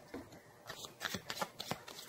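Tarot cards being shuffled and handled by hand: a string of irregular soft card clicks and flicks.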